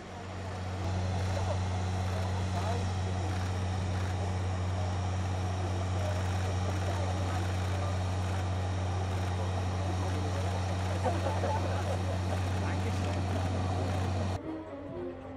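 Helicopter running steadily: a constant low drone that swells about a second in and holds level, with voices in the background.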